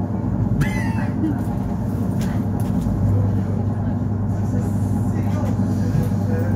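Inside an ER9-series electric multiple unit rolling slowly into a station: a steady low hum and rumble of the running train's equipment and wheels, with a brief higher squeal about a second in.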